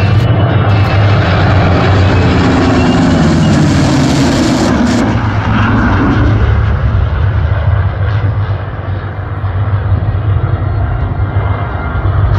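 An F-35A Lightning II and three P-51 Mustangs fly past in formation: jet roar mixed with the Mustangs' piston engines. The pitch drops as they pass, about three to six seconds in, and the sound then fades as they fly away.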